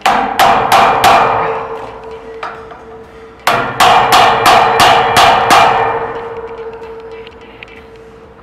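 Hammer blows on a steel magnetic cylinder guard of a door lock, each strike ringing metallically and dying away. There are four quick blows, a single lighter one, then a run of about seven more in a break-in attack that the guard withstands.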